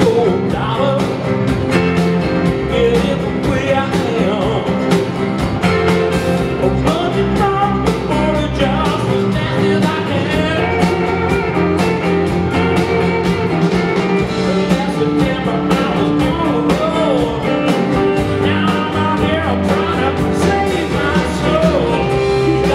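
Live roots-rock band playing a mid-tempo song on electric and acoustic guitars, bass and drums with a steady beat.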